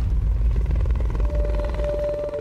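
Helicopter rotor chop over a heavy low rumble, with a steady tone coming in a little past the middle.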